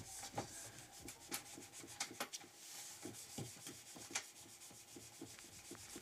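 Faint rubbing and rustling with scattered small clicks at an uneven pace.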